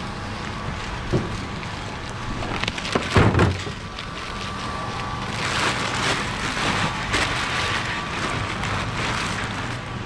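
Plastic shrink wrap crinkling and tearing as it is pulled off a pallet of bottled smoothies, with a deeper thump about three seconds in. A faint steady hum runs underneath.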